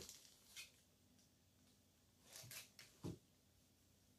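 Near silence, with a few faint handling noises from cleaning an engine control unit's circuit board with alcohol: a soft click about half a second in, a brief rustle a little after two seconds, and a short knock about three seconds in.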